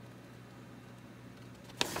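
Quiet room tone with a faint steady low hum, then the crisp rustle of a paper instruction booklet page being turned near the end.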